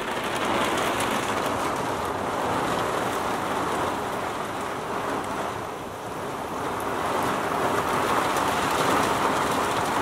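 Heavy rain pouring on a Scamp fiberglass travel trailer, heard from inside as a steady rush that eases slightly about halfway through.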